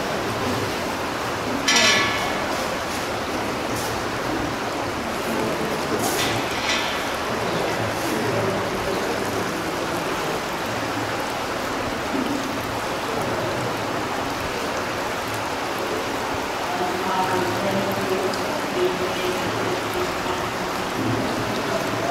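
Steady rushing water-like noise in an echoing indoor swimming-pool hall, with faint indistinct voices. A brief high-pitched sound comes about two seconds in, and a shorter one around six seconds.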